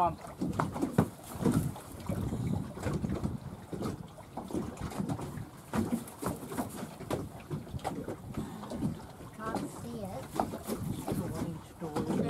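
Gusty wind buffeting the microphone on a small open boat, an uneven rumble broken by short knocks, with a couple of brief low voices near the end.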